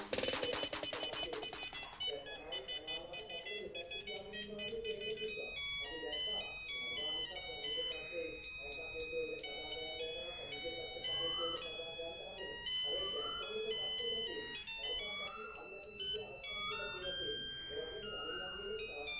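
Music: a melody of high electronic notes changing step by step over a lower voice-like line, with a beat fading out in the first two seconds.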